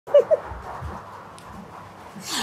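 A sleeping woman gives two short vocal sounds in quick succession near the start, each falling in pitch, while she dreams; after them only a low steady hiss remains.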